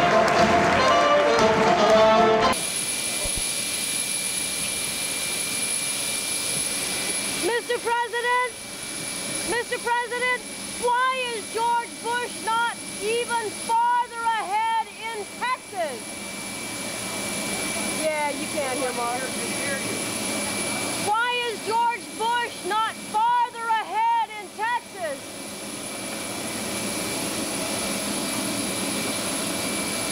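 Band music for the first two seconds or so, then a cut to the steady whine of jet engines running at an airfield, with a thin high steady tone through it. Over the engines come two spells of loud, high-pitched shouted calls, one in the first half and a shorter one about two-thirds of the way in.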